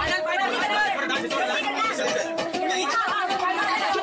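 Many voices chattering and calling out over one another, like a crowd of people all talking at once, with no bass beneath them.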